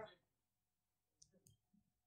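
Near silence: room tone, with a couple of faint short clicks a little past a second in.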